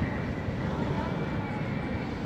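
Steady low rumble with faint distant voices over it.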